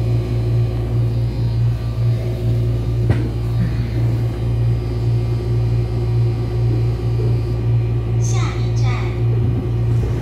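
Steady low hum inside an electric multiple-unit commuter train carriage, with a few short higher sweeping sounds near the end.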